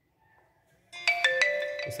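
Smartphone text-message notification tone: a short chime of several notes that starts suddenly about a second in, signalling an incoming SMS.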